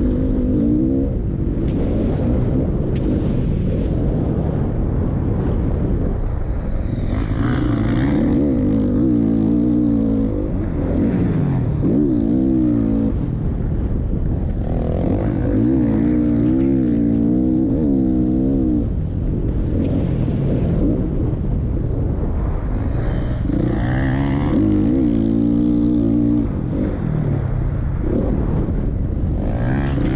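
Motocross bike engine heard from close onboard, revving up and dropping back again and again with throttle and gear changes through the straights and corners.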